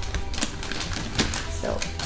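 Gift-wrapped presents being handled and set down, the wrapping paper crackling in a few sharp clicks, over soft background music.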